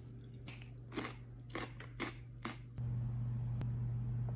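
Crisp crunching bites into a raw mini cucumber, about five crunches in the first two and a half seconds. A steady low hum takes over near the end.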